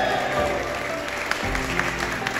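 Applause from a small audience, many hands clapping, with background music running underneath.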